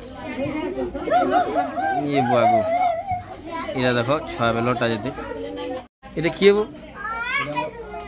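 Children's voices: a child speaking in a wavering, sing-song voice, with more child chatter around it. The sound cuts out completely for a moment just before six seconds in.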